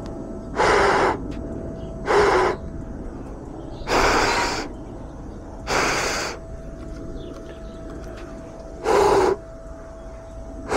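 A person breathing out hard onto a small drone's motors five times, in separate huffs, to warm the motor wires. The warmth is meant to clear an ESC error that the upgraded motors' soldered connections give when they are cold.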